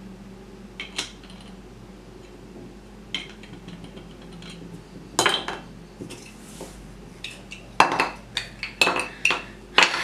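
Hard plastic Duplo-style toy bricks clicking and clacking as a genuine Duplo brick is tried on knock-off bricks and the stack is pulled apart and set down on the table. A few scattered clicks come first, a louder clatter about halfway through, then a quick run of clacks near the end.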